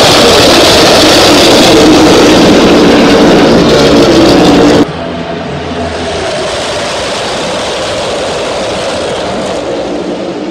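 A pack of NASCAR Cup Series stock cars racing past, their V8 engines a very loud, steady drone. About five seconds in it drops suddenly to a quieter drone as the pack runs farther down the track.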